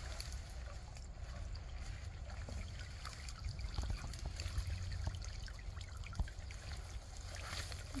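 Water trickling and splashing off a wire-mesh muskrat colony trap as it is lifted out of a shallow ditch, with a few light knocks from the cage and a steady low rumble underneath.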